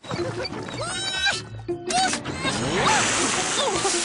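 Cartoon soundtrack of music and squeaky, gliding voices. About halfway in, a rushing hiss of water spraying from hoses builds up and stays.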